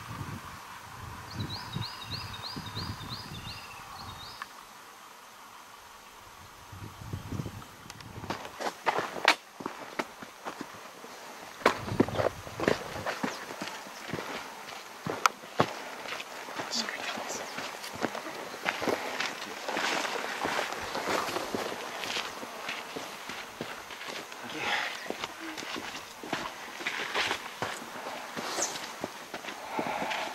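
Footsteps crunching on a sandy, stony bush track, several walkers, starting about eight seconds in and carrying on as an irregular patter of steps. Near the start a quick run of about nine high, short notes is heard.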